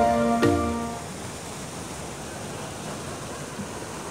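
Background music with drum hits ends about a second in, giving way to a steady rush of river water.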